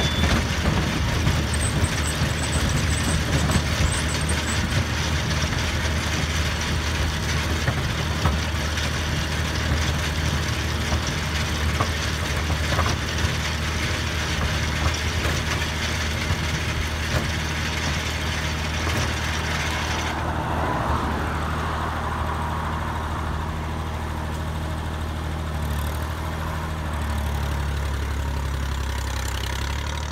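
Massey Ferguson tractor engine running steadily while pulling a Standen Cyclone beet harvester, with the harvester's machinery clattering and rushing over it. About two-thirds of the way through the clatter drops away abruptly, leaving the steady engine note, which grows a little stronger near the end.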